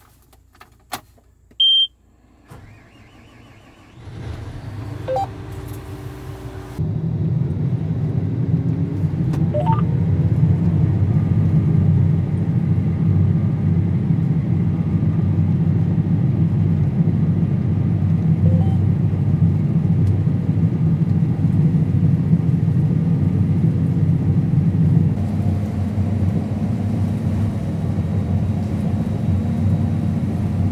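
John Deere combine heard from inside the cab: a short beep, then the engine and threshing machinery come up over several seconds, rising in pitch, with a sudden step up in loudness about seven seconds in. After that it settles into a loud, steady low drone while it harvests soybeans.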